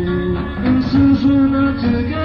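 A 1960s beat group playing live: a sustained melody line moving in steps over a steady bass.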